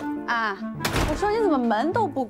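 A wooden door thudding once, about a second in, over light clarinet-led background music.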